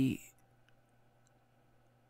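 A spoken word trails off in the first moments, then quiet room tone with a faint steady low hum and a few faint clicks.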